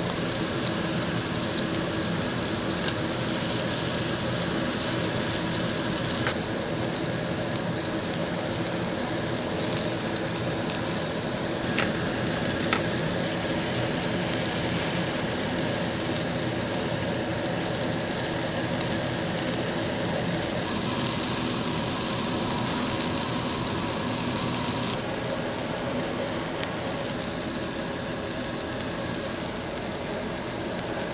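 Pork belly pieces sizzling steadily on a hot grill plate, fat spitting in a continuous hiss, with a few light clicks of metal tongs against the meat and plate.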